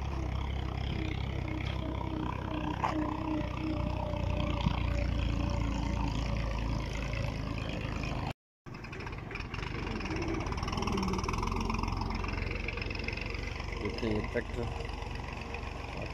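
Outdoor ambience: a steady low rumble with faint voices in the background. The sound cuts out completely for a moment about eight seconds in, then resumes.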